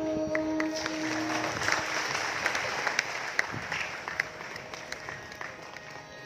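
Carnatic music ending on a held note, then audience applause that starts about a second in and dies away over the next few seconds.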